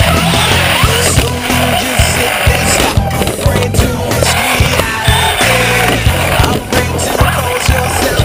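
Rolling and rattling of a Traxxas Slash 4x4 RC truck's wheels and chassis on the track surface, picked up by its onboard camera, with frequent knocks from bumps and landings, under rock music.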